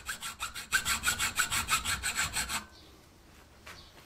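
Hacksaw blade cutting through a steel bicycle chainstay tube clamped in a tube vise, with rapid, even back-and-forth strokes, about six a second. The sawing stops about two and a half seconds in.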